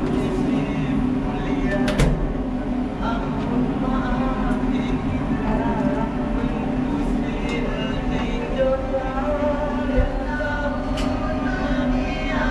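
Steady hum inside a passenger lift car as it runs, with indistinct voices murmuring throughout. A sharp knock comes about two seconds in, just after the doors shut, and another near the end.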